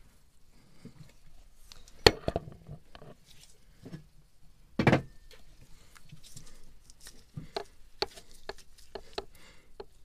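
Scattered clicks and knocks of gloved hands handling metal parts at the exhaust elbow mount of a marine diesel engine while the old exhaust gasket is being removed. A sharp click comes about two seconds in and a duller knock about five seconds in, with lighter clicks near the end.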